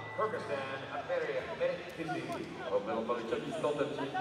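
Voices talking, not the commentary, with a laugh about a second in.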